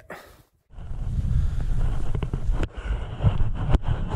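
Wind rumbling on the microphone, a loud low buffeting that starts about a second in, with a couple of sharp clicks later on.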